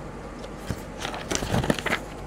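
Paper sheets in a three-ring binder being turned and handled: a single light tap a little before the middle, then a cluster of rustles in the second half.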